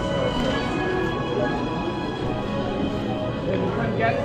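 Background music with long held notes playing steadily in a large indoor queue hall, with voices of people queuing underneath.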